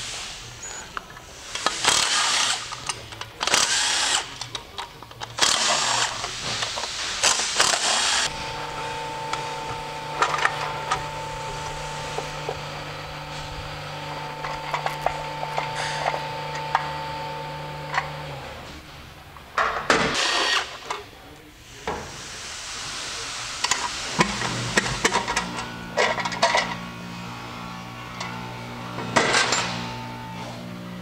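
A handheld cordless drill-driver running in short bursts, spinning out the valve cover bolts on a crate engine: several bursts in the first eight seconds and another about twenty seconds in. Background music with steady held notes plays through much of it.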